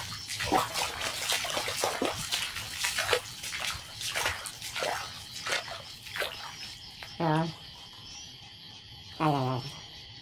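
Wading through shallow flood water, with irregular splashing and sloshing for the first six seconds or so. Then frogs call: two short, rattling croaks about two seconds apart, over a steady high trill of insects.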